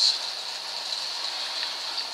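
Euroreef RC500 recirculating protein skimmer and its pumps running, with a steady rush of water and air bubbles.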